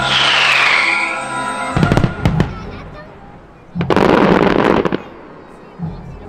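Fireworks going off at the end of an orchestral music cue: a falling whistle in the first second, a cluster of sharp bangs about two seconds in, and a loud dense burst about a second long near four seconds in.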